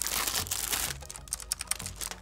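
Clear plastic wrap rustling and crinkling as a small keyboard is pulled out of it. This is followed, about a second in, by a scatter of light plastic clicks and taps from the keyboard being handled.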